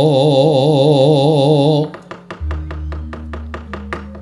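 Javanese gamelan music for wayang kulit. A long sung note with wide, even vibrato ends about two seconds in, then struck metal keys carry on with quick, even notes, about five a second, over a low sustained gong hum.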